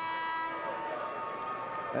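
Arena horn sounding one long steady tone during the stoppage in play, fading out near the end.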